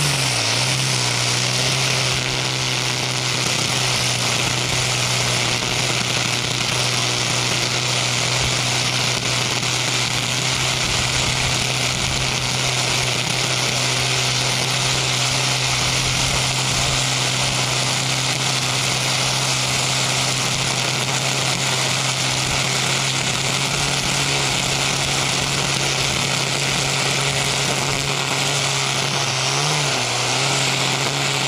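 Husqvarna 325iLK battery string trimmer spinning square .080 trimmer line at a steady high speed while edging grass along a concrete sidewalk: a constant whirring hum with a dense hiss of cut grass and line striking the pavement edge. Near the end the speed dips briefly and picks up again.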